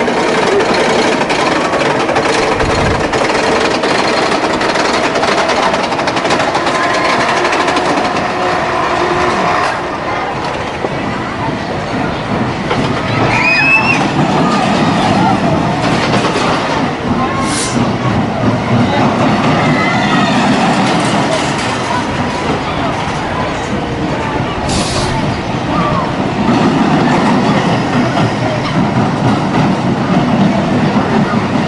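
Pinfari steel roller coaster train running along its track past the camera, a steady rattling rumble of wheels on rail, with riders' and crowd voices mixed in.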